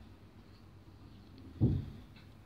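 Faint room tone, with one short dull thump about one and a half seconds in.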